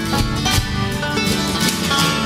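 Country-bluegrass band music with guitar and banjo playing an instrumental fill between sung lines, with no singing.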